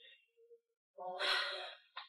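A woman's long, audible sigh, breathy with some voice in it, starting about a second in and lasting just under a second: a sigh of weariness and frustration.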